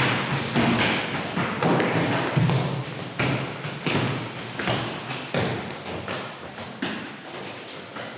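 Feet of several people landing on a wooden board floor as they jump and skip across it: a string of irregular, overlapping thuds that thin out and grow fainter toward the end.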